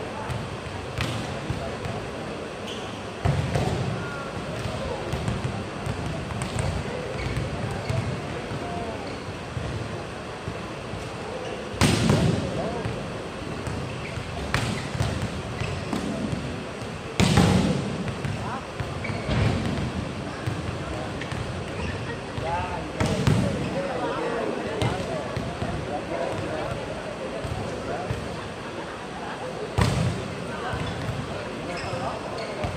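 Volleyballs being hit hard in warm-up on an indoor court: several loud sharp smacks a few seconds apart, of hands striking the ball and the ball slamming the floor, echoing in the hall over a steady murmur of voices.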